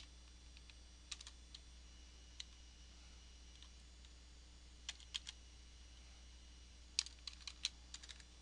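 Computer keyboard keystrokes, faint: scattered single taps and short runs, ending in a quick run of about five keys near the end. A low steady hum lies underneath.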